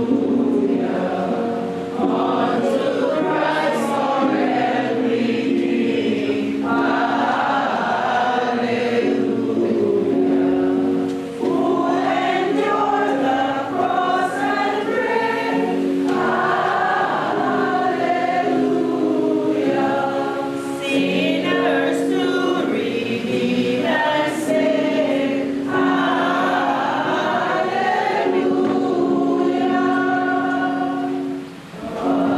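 A gathering of people singing a hymn together from printed sheets, in long held phrases with a short break for breath about every nine seconds.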